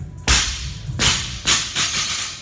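Loaded barbell with bumper plates dropped from overhead onto a rubber gym floor: one loud slam, then three bounces coming closer and closer together as the bar settles.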